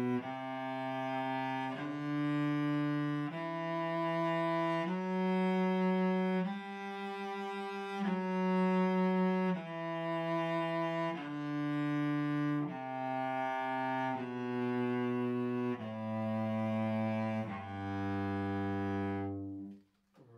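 Cello playing a one-octave G major scale up and back down, one long full-bow note on each step, about one every second and a half. It reaches the top G about halfway and comes back down to the low G, which ends just before the close.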